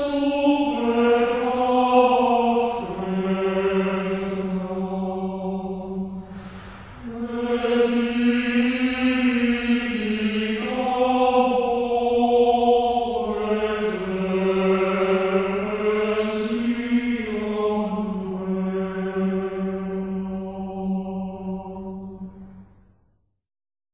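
A slow sung chant: long, steady vocal notes held for several seconds each, stepping between a few pitches, in phrases with brief breaks between them.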